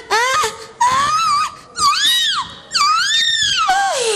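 A woman's high-pitched, theatrical wailing: about four long cries in a row, each climbing and then falling in pitch, performed as a comic mock lament.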